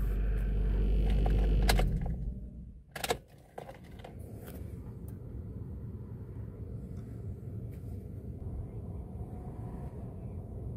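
Low steady rumble of a car idling, heard from inside the cabin, that dies away about two seconds in. A couple of sharp clicks come around three seconds in, then only a faint steady low hum remains.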